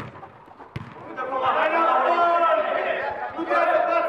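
A football kicked once, a sharp thud just under a second in, followed by several voices shouting over one another from the pitch.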